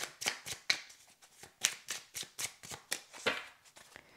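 Oracle card deck being shuffled by hand: a rapid, irregular run of short card slaps, several a second.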